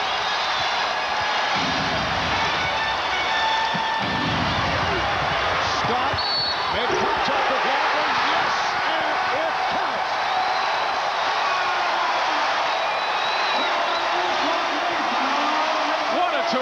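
Loud, continuous arena crowd noise from a packed home crowd cheering a basket and foul late in an overtime game. A basketball is dribbled on the hardwood court in the first few seconds.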